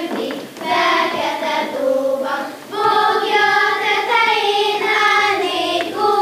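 A group of children singing a Hungarian folk song together in one melody line, with two short breaks between phrases.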